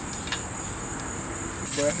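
A steady, high-pitched insect chorus, with a voice starting near the end.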